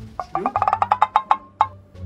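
A quick run of about a dozen short wood-block taps, bunched close together in the middle and spacing out before they stop shortly before the end: an edited-in sound effect.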